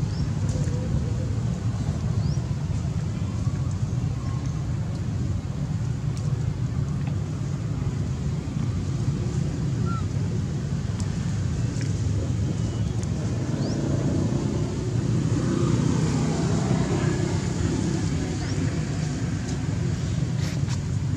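Steady low rumble of outdoor background noise, a little louder in the last few seconds, with a few faint short high chirps.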